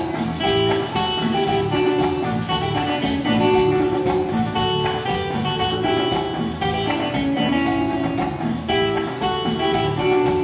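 Live Latin dance band playing an instrumental passage, with a prominent guitar line over congas, hand drum and drum kit.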